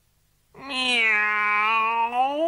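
A cartoon cat's single long meow, starting about half a second in: the pitch holds level, then rises at the end.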